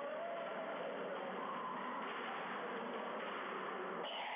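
Steady background hum of a busy hall, with faint, indistinct distant voices.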